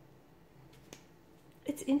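Quiet room tone with a single short, sharp click about a second in, then a woman starts speaking near the end.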